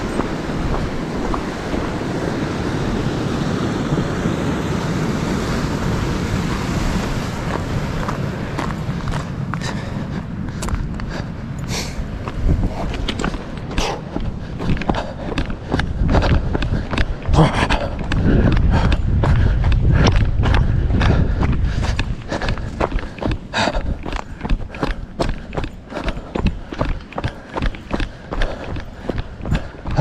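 Footsteps on loose stone and rock, settling into a steady walking rhythm about a third of the way in. Wind rumbles on the microphone, heaviest at the start and again in the middle.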